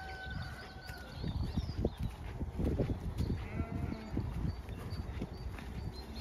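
Zwartbles sheep bleating, one short call at the start and another about three and a half seconds in. Uneven low thuds of footsteps through grass run through the middle, with small bird chirps above.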